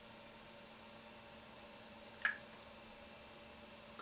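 Quiet room tone with a faint steady hum, and one short soft click about halfway through as the lipstick works against the lips.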